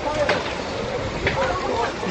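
Onlookers' voices, faint and indistinct, over a steady rushing outdoor background noise.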